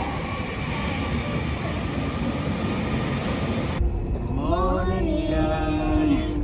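A passenger train at a station platform: a steady rumble with faint whining tones. About four seconds in it cuts off abruptly, leaving a quieter background with a voice or music over it.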